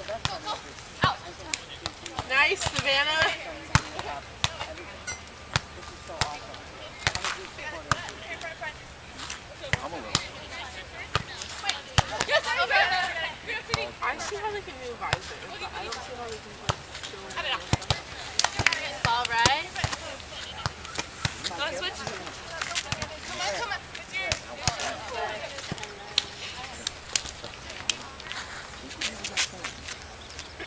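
Beach volleyball play: a string of sharp slaps of hands striking the ball, with players' calls and shouts breaking in several times.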